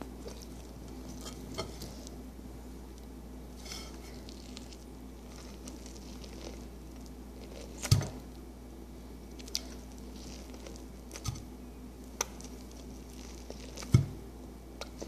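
A toddler gnawing and chewing corn on the cob: scattered small wet mouth clicks over a steady low hum, with a louder thump about eight seconds in and a few lighter knocks later.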